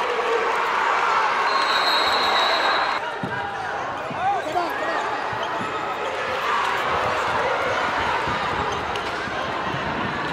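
Live gym sound from a basketball game: crowd voices, sneakers squeaking on the hardwood and the ball bouncing. A steady high whistle blast comes about one and a half seconds in and lasts about a second and a half.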